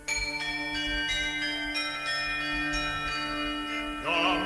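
A set of tuned bells struck one after another, about three strikes a second, each note ringing on, over a steady drone in a recording of medieval music.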